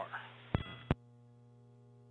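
The tail of a voice on the launch commentary line, then two sharp clicks about half a second apart with a short tone between them, like a push-to-talk intercom key opening and closing. After the second click a faint, steady electrical hum stays on the line.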